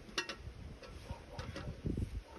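A few scattered light clicks and knocks from hands working at a log and metal hardware, irregular rather than rhythmic.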